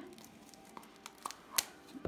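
Scissors snipping to cut open a spool of satin ribbon: a few short, sharp clicks, the sharpest about one and a half seconds in.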